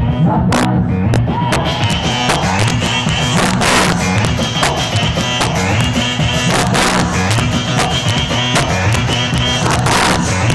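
Live Malagasy salegy band playing loud dance music with electric guitar and drums keeping a steady, driving beat, with a few loud crashes about three and a half and seven seconds in.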